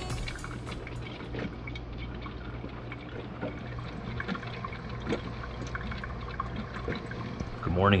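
Drip coffee maker brewing: a steady low hum under many small pops, gurgles and drips, the hum dropping away about a second before the end. A man says "Morning" at the very end.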